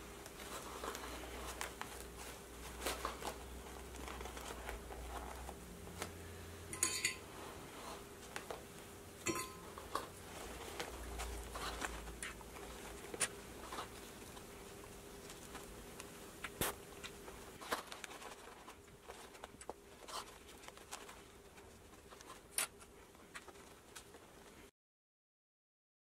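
Faint rustling of fabric and foam being handled, with scattered light clicks of plastic sewing clips being snapped onto the edges, a few louder than the rest.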